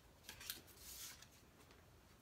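Faint handling sounds of tarot cards: light clicks in the first half second, then a soft swish about a second in, as a card is slid off the deck and turned over above a wooden table.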